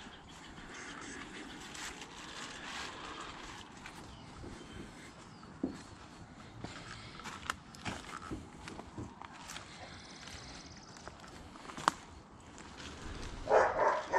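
Soft footsteps on a wood-chip garden path, with scattered light clicks and knocks.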